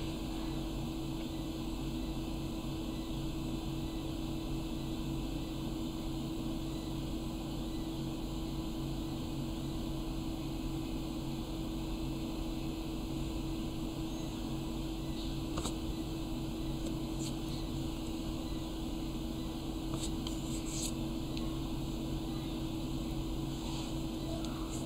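Steady low hum of room background noise, a fan-like drone with a faint steady tone. A few faint clicks come through it after the middle.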